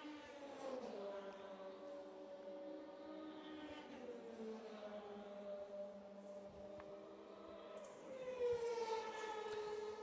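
A single race car's engine heard faint and far off, its note sliding down and back up in long sweeps as it runs along the straight, growing louder near the end.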